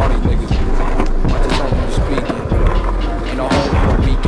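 Hip-hop backing track with a steady beat, mixed with the rolling rumble of skateboard wheels on concrete.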